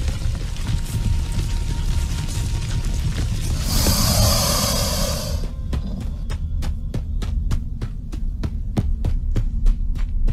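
Sci-fi audio-drama sound effects. A steady low rumbling hum runs throughout. About four seconds in comes a hiss lasting over a second, and after it a run of regular sharp clicks, about three a second.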